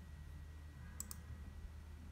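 Two quick, faint clicks close together about a second in, over a steady low electrical hum.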